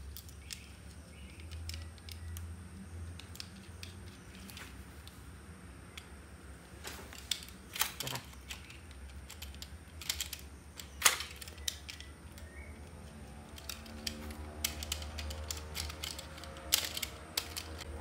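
Scattered plastic clicks and knocks as a scope and sight are handled and screwed onto the rail of a toy M416 gel blaster, over a low steady hum.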